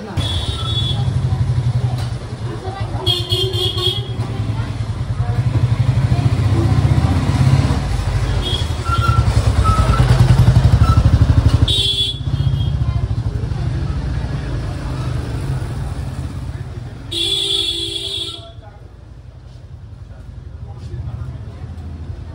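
A motorcycle engine running close by, a steady low chugging, with short horn beeps near the start, about three seconds in, about twelve seconds in, and a longer one about seventeen seconds in; the engine sound then drops off.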